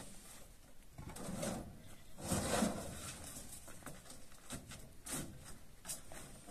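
Hollow concrete blocks being handled and stacked: a scraping knock of block on block about two seconds in, with a softer one before it and a few light clicks near the end.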